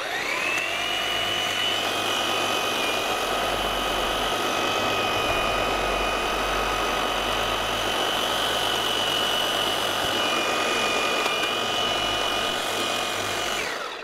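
Cordless EGO Power+ pole hedge trimmer running: its electric motor spins up with a rising whine and runs steadily, trimming the top of a conifer hedge, then winds down near the end.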